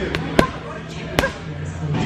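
Gloved punches landing on a heavy punching bag: a quick pair of thuds at the start, then two more spaced out over the next second.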